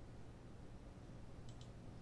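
Faint computer mouse click, a quick pair of ticks about a second and a half in, over near-silent room tone with a low hum.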